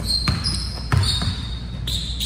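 Basketball dribbled on a hardwood gym floor: two sharp bounces, the second the louder, with high squeaks typical of sneakers on the court between them.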